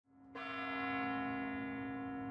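The Kremlin's Spasskaya Tower clock bell striking once as the clock reaches midnight, a single stroke about a third of a second in that rings on with a long, slowly fading tone.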